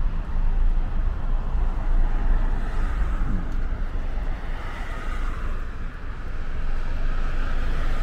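A car driving, with a steady low rumble of road and wind noise.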